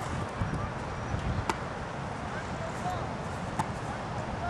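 Open-field ambience: a steady low background noise with faint distant voices, and two sharp clicks about a second and a half in and near the end.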